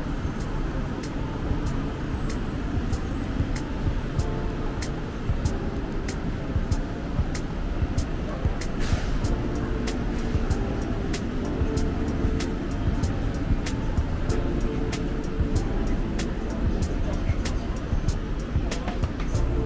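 Background music with a steady ticking beat about three times a second, joined by a simple melody a few seconds in, over the constant low rumble and voices of a busy shopping mall.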